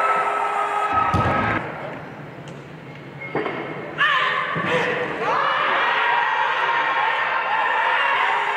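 A loaded barbell dropped onto the competition platform with a heavy thud about a second in, over voices and shouting in a large arena. About four seconds in, louder voices and shouts rise again as another lift is pulled.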